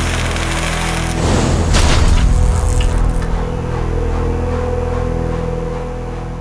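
Cinematic logo sting: a dense rushing swell with a deep boom about a second in, settling into a held drone of steady tones that begins to fade near the end.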